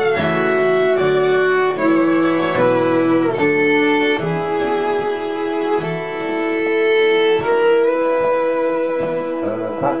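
Instrumental break of a traditional Irish ballad: fiddle carrying a slow melody of held notes over accordion and strummed acoustic guitar.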